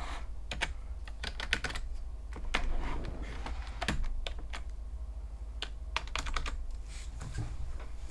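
Keystrokes on a wired computer keyboard, typed in short, irregular runs of clicks.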